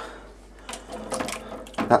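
Stiff plastic racking rod and siphon tubing handled in a stainless steel sink: a run of irregular light knocks and rattles of plastic against steel, starting just under a second in.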